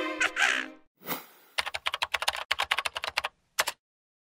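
Logo sound effects: a cartoon parrot's squawk, then a fast run of computer-keyboard typing clicks lasting a couple of seconds, with two last clicks near the end.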